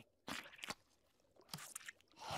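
Faint cartoon sound effect of someone biting into and chewing a sandwich: a few short crunches and chewing clicks.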